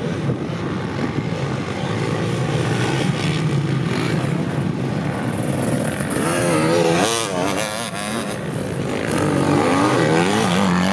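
Motocross bikes' engines running on a dirt track, one revving up and down hard about six to eight seconds in, and another revving near the end.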